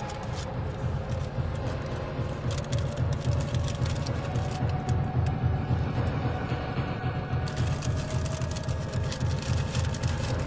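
Steady low hum of a car idling, heard inside the cabin, with bursts of paper food-wrapper crinkling about two and a half seconds in and again for the last couple of seconds.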